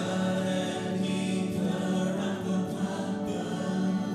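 A live church worship band performing a song, with several voices singing together over guitar, piano and keyboard.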